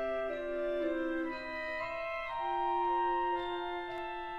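Background music: slow, sustained chords, each held about a second before shifting to the next.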